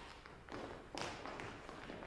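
Faint footsteps of several performers hurrying off across a stage floor, soft taps with a couple of clearer steps about half a second and a second in.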